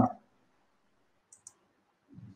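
Near silence: room tone, with two faint, quick clicks close together about a second and a half in.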